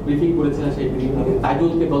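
Only speech: a man talking into microphones at a press conference.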